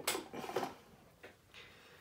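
A few light clicks and knocks from small metal hobby tools being handled on a workbench cutting mat in the first half second, then only faint room tone.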